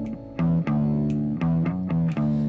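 Instrumental break in an indie-rock song: about five separate plucked bass and guitar notes, one at a time, as a held chord fades away.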